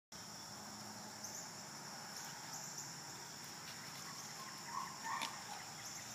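Steady high-pitched insect chorus, with a couple of faint short calls about five seconds in.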